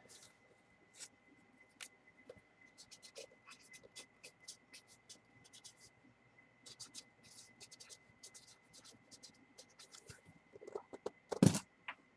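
Felt-tip marker writing a name on paper: a long run of short, faint, scratchy strokes. Near the end there is one louder handling sound.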